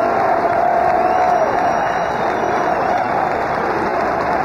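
Ballpark crowd of tens of thousands cheering and applauding in a long, unbroken ovation, heard through a radio broadcast recording.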